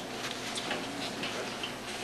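A few faint, light ticks or clicks, roughly four a second, over steady room noise.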